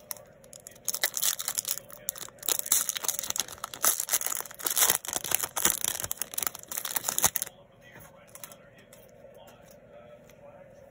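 Foil wrapper of a 2018 Topps Series 1 baseball card pack being torn open and crinkled by hand. It is a dense run of crackles starting about a second in, lasting about six seconds and then stopping.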